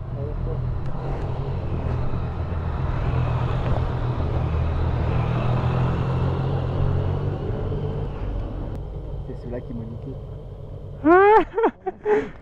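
Motorcycle engines running at low revs as motorcycles roll slowly past, the hum swelling over the first few seconds and fading away around eight to ten seconds in.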